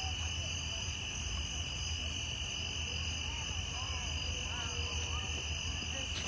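Night insects trilling steadily outdoors, a continuous high-pitched chorus that does not let up, over a low steady hum.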